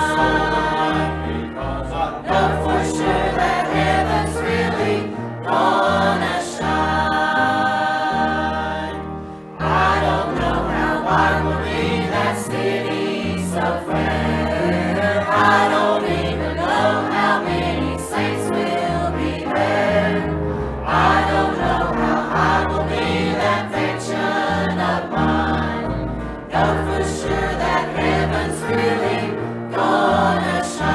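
Church choir of adults and children singing a hymn together over an accompaniment with a steady bass line, the music dipping briefly about ten seconds in.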